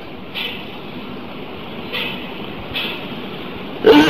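Steady background noise of the recording in a pause between spoken sentences, with a few faint short sounds in it.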